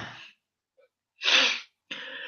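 A man's short, sharp breath sound about a second in, noisy and unpitched, after the fading tail of a louder throat sound at the very start.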